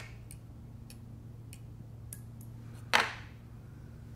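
Faint small ticks of fly-tying work at the vise, then one sharp snip about three seconds in as the tag of stonefly chenille is trimmed with scissors.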